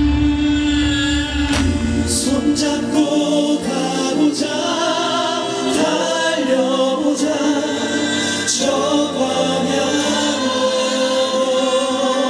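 Live stage music with a group of voices singing together in choir-like harmony over the band accompaniment. The heavy bass drops out about three seconds in, leaving the voices and higher accompaniment.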